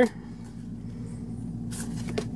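Pokémon trading cards being handled and shuffled in the hands, a faint papery rustle near the end, over a steady low hum.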